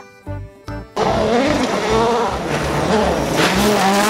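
Background music with a steady beat for about the first second, then a rally car racing on a gravel stage: its engine revving hard, the pitch rising and falling with gear changes, over loud tyre and gravel noise.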